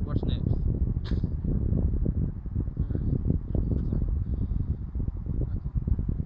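Wind buffeting the microphone: a steady low rumble, with one sharp click about a second in.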